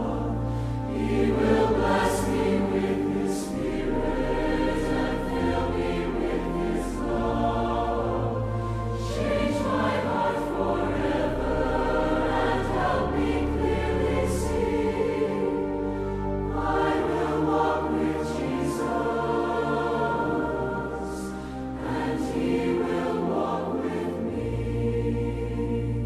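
Large mixed choir singing a slow hymn in many parts, accompanied by pipe organ, whose deep bass notes are held for several seconds at a time under the voices.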